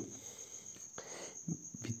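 A steady, high-pitched pulsing chirp, typical of a cricket, over low room tone. A faint click comes about a second in, and a brief soft breath or murmur near the end.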